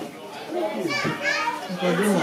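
Indistinct voices of several people talking over one another, including high-pitched children's voices, in a room full of guests.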